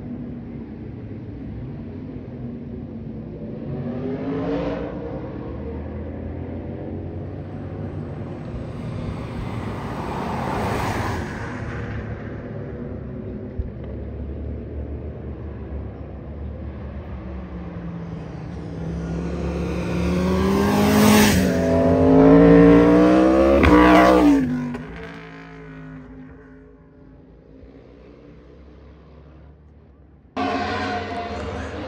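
Motor vehicles passing through a bend on a mountain road, their engines accelerating with rising pitch. Two quieter passes come early; the loudest, about two-thirds of the way in, revs up and climbs for a few seconds before fading away.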